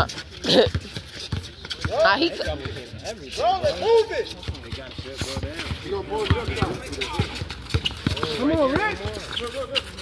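Several people's voices talking and calling out over an outdoor pickup basketball game, with scattered short knocks and thuds from play on the court.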